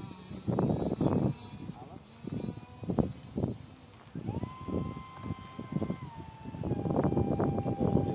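Electric ducted fan of a model F-16 jet whining steadily, a stronger whine starting about four seconds in and stepping down to a lower pitch about two seconds later, as the throttle is eased back. Irregular bursts of low noise run under it.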